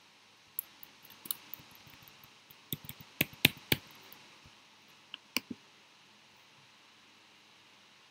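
Computer keyboard keystrokes and mouse clicks: scattered sharp clicks, with a short run of louder ones about three seconds in.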